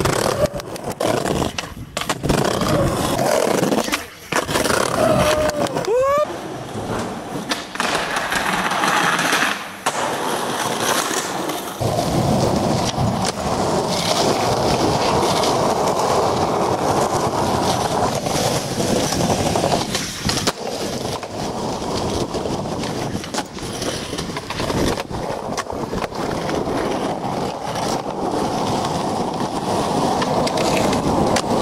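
Skateboard wheels rolling over pavement and tiles, broken by sharp cracks of tail pops, board clacks and landings over several tricks. A brief rising squeal comes about six seconds in.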